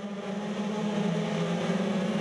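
A pack of racing powerboats' outboard engines running together at speed, a steady drone that grows a little louder.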